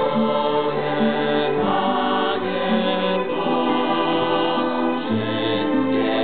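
Mixed choir of children's and teenagers' voices singing a Polish psalm setting in sustained, multi-part harmony, accompanied by violins.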